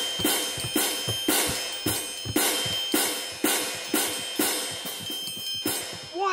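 Hand cymbals clashing in a steady beat, about two crashes a second, over the ringing tone of a struck triangle. The crashes stop just before the end.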